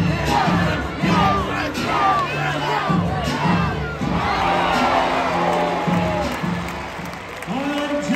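A ballpark crowd cheering and shouting, with many voices overlapping, over music with held bass notes.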